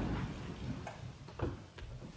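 Footsteps on a hard floor: a few separate steps about half a second apart, as people move about after being called to rise.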